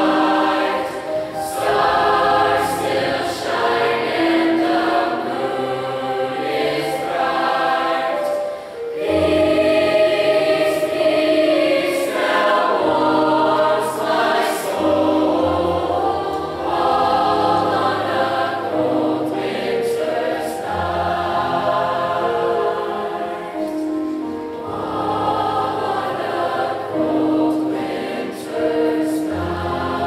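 Large mixed choir of teenage voices singing in harmony, holding long chords. A brief dip just before nine seconds in, then a fuller, louder passage with strong low notes.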